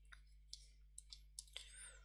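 Faint, scattered taps and clicks of a stylus on a pen tablet as words are handwritten, over a low steady hum.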